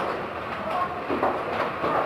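Rail ride car running along its track through a tunnel: a steady rattling rumble, with faint voices in the background.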